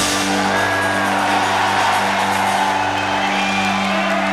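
Live rock band holding one long, steady chord on guitars and keyboard, with the audience cheering and whooping over it.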